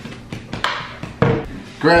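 Plastic screw lid of a Jif peanut butter jar being twisted open, with several short clicks and knocks, then the lid set down on a wooden table.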